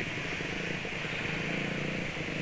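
Automatic scooter's engine running at low speed in dense motorcycle traffic: a steady low hum under a rush of road and surrounding traffic noise.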